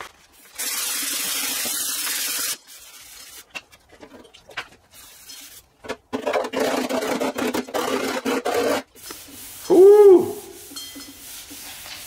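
Shrinking disc rubbing across the high spot of a Model A's sheet-steel body panel in two runs, with light clicks between them. A short, loud hooting tone that rises and falls comes near the end.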